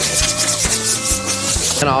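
Compressed-air blow gun blowing sanding dust off a plastic bumper: a loud, fluttering rush of air that cuts off near the end, with background music under it.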